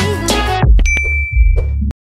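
Background music with a steady beat that turns muffled about half a second in, then a single notification-bell ding sound effect about a second in, ringing on one steady high tone; everything cuts off suddenly just before the end.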